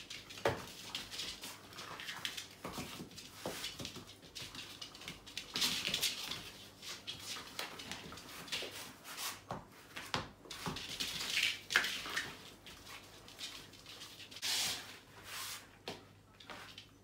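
A puppy playing tug with a rope toy on a laminate floor: irregular scuffling, paws and claws scrabbling and the toy knocking about, in short bursts.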